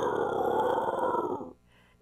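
A growl from the puppet bear: one long growl that stops abruptly about one and a half seconds in.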